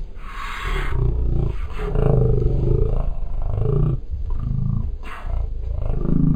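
Sound from inside a moving car, slowed down to well under half speed, so everything is stretched and pitched low: deep, drawn-out sounds that swell and bend up and down in pitch, with brief bursts of hiss.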